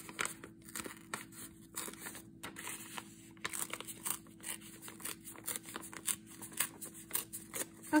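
A sheet of pink ink-dyed paper being torn slowly by hand, a run of small irregular rips and crackles.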